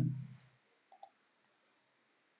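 Two quick computer mouse clicks close together about a second in, as the on-screen pen annotations are cleared; the end of a spoken word trails off just before.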